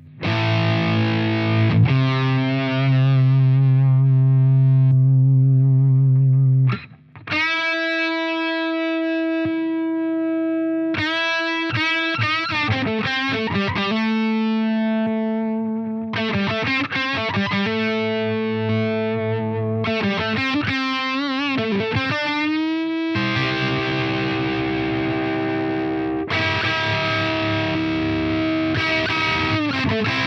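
Distorted electric guitar through the Flattley Plexstar Plexi-style overdrive pedal with its boost switched on, played into a miked amp. A held chord rings for several seconds, then single-note lines with bends and vibrato follow, and chords are played near the end. The boost thickens the mids.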